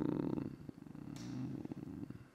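A man's drawn-out hesitation sound in a creaky, rattling voice (vocal fry), tailing off as he thinks what to type. A few faint keyboard taps can be heard under it.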